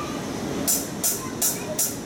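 A drummer's count-in: four evenly spaced, crisp ticks, a little under three a second, over a low murmur of voices in the room.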